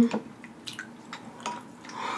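A spoon scooping through thin sauce in a glass bowl: a few faint wet clicks and drips.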